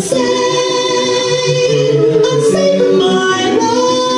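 A voice singing long held notes over backing music with a steady bass line, the sung note changing pitch about two seconds in.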